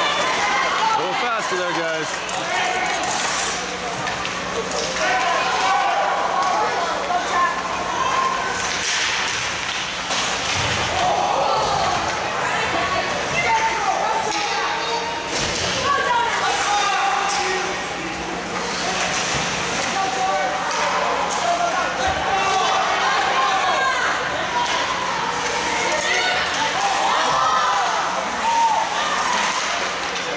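Ice hockey game sound: spectators talking and calling out indistinctly, with sharp knocks of sticks, puck and players against the boards scattered through, over a steady low hum.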